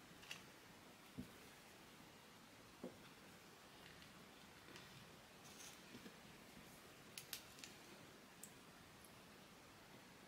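Near silence, broken by faint scattered clicks and light taps of paper pieces being handled and laid onto a journal card, most of them in the second half.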